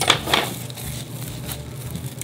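Clear plastic wrap crinkling as a block of chilled cookie dough is unwrapped and a piece is pulled out, loudest in the first half second.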